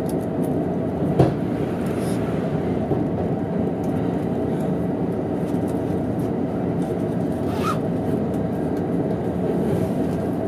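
Steady running noise of an E231-series electric train heard from inside a carriage while it runs at speed, the wheels rumbling on the rails. A single sharp knock about a second in is the loudest moment.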